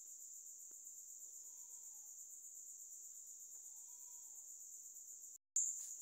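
Faint, steady high-pitched trilling of crickets in the background. It cuts out for an instant near the end.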